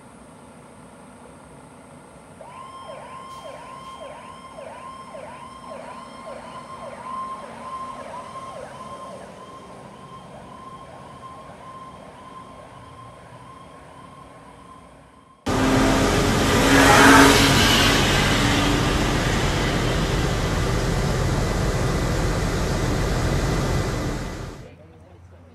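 Fire engine siren in a fast yelp, rising and falling about two to three times a second and growing fainter as the truck moves off. About fifteen seconds in it cuts sharply to a much louder, steady rushing noise.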